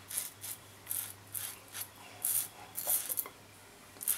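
Merkur Progress adjustable double-edge safety razor, on its top setting of five, scraping through two days' stubble on the cheek with the grain on the first pass. It makes about eight short scrapes, roughly two a second.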